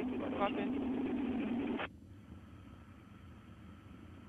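Open radio channel from the launch communications loop: the tail of a voice transmission, then channel hiss that cuts off suddenly about two seconds in, as when the transmitter is released, leaving a faint low rumble and a thin steady tone.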